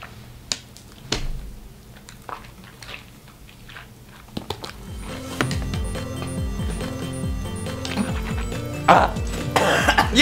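Background music that grows louder about halfway through, with a few short coughs and splutters from a person choking on a mouthful of dry ground cinnamon. The loudest splutters come near the end.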